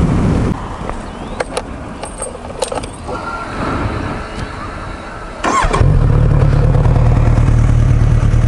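Kawasaki Z900RS inline-four motorcycle engine heard from the rider's helmet. The riding sound drops away about half a second in, and a quieter stretch with a few sharp clicks follows. From about five and a half seconds in, the engine runs steadily at idle while the bike stands.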